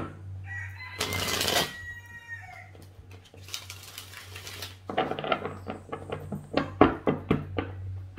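A rooster crows once, starting about half a second in. Near the end, a tarot deck is shuffled by hand in a quick run of soft card clicks.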